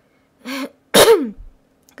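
A woman sneezes once: a short lead-in sound about half a second in, then a loud burst about a second in whose voiced tail falls in pitch.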